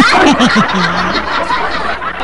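Laughter that bursts out loudly at the start, with a few falling laughs in the first second, then carries on steadily.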